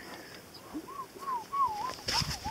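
A short run of about four clear whistled notes, each gliding up and then down in pitch, starting about halfway through.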